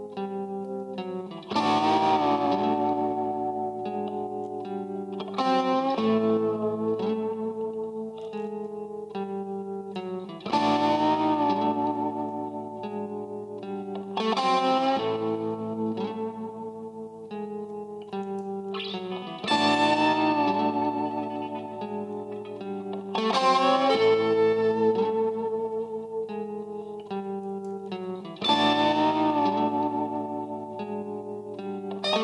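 Electric guitar, a 1968 Fender Telecaster with a Bigsby, played through an early-1970s Fender Deluxe Reverb with delay and reverb pedals, picked up by the Samsystems Integral microphone mounted in front of the speaker. A looped phrase: a chord struck and left to ring about every four to five seconds, with picked notes between, the same two-chord pattern coming round about every nine seconds.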